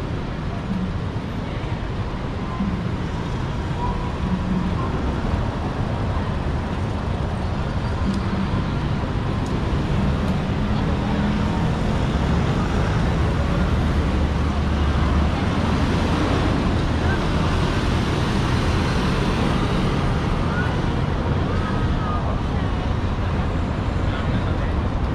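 Busy city street ambience: steady traffic noise with passers-by talking.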